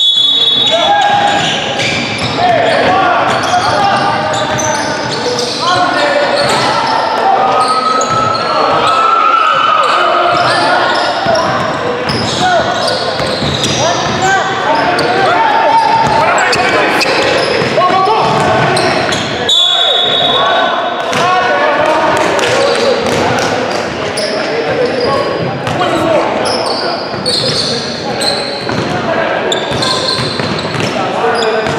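Live indoor basketball game: players' voices calling out and chattering, with a basketball bouncing on a hardwood court, echoing in a gymnasium.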